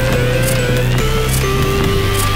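Background electronic music: held bass notes under a synth melody that steps between long notes, with a slow rising sweep.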